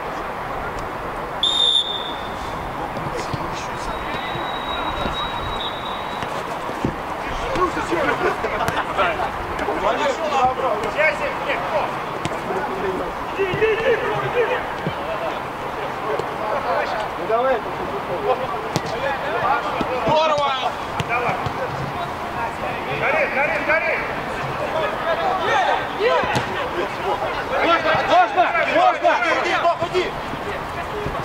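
Amateur football players shouting to each other across the pitch, with the knocks of the ball being kicked. A short, high whistle blast comes about a second and a half in, fitting a referee's whistle for the restart.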